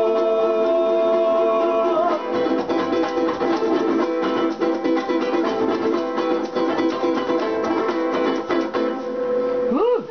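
Ukuleles strumming the closing bars of an acoustic song. A long held note sounds over the strumming for the first two seconds, then the chords carry on alone.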